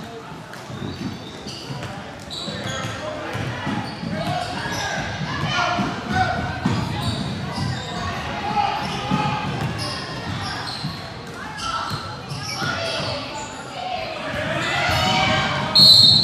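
Basketball dribbling and thumping on a hardwood gym floor, with many voices calling and shouting in a large, echoing gym. Near the end, a short, loud referee's whistle blast.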